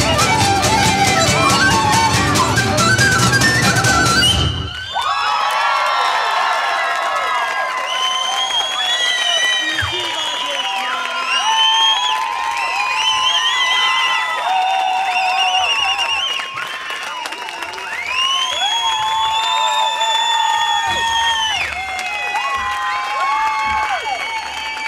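A Hungarian folk band (fiddle, acoustic guitars, flute and percussion) plays the last bars of a song, which cuts off about four and a half seconds in. The audience then cheers and whoops, with applause underneath.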